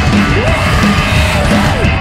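Three-piece rock band playing live and loud: distorted electric guitar, electric bass and drum kit. A yelled vocal slides up in pitch about half a second in, holds, and drops away near the end.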